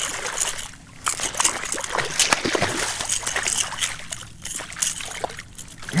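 Hooked speckled trout thrashing at the water surface beside the angler, a run of irregular splashes and sloshes as it is drawn in on the line.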